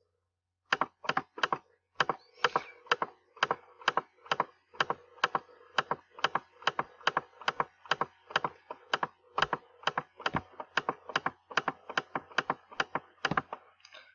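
Computer mouse clicking repeatedly at an even pace, about two to three sharp clicks a second, as a list is scrolled a step at a time by its scroll-bar arrow.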